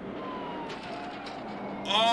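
Film soundtrack of a car chase: a car running on the road, with a faint, slowly falling whine over the engine and road noise. It cuts in suddenly.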